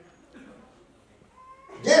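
A short pause in a man's speech, with only faint low sounds and a faint thin tone, before his voice comes back near the end.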